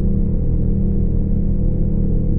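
Sound design of an animated logo outro: a deep, steady, sustained drone of several low tones with a slow pulsing underneath.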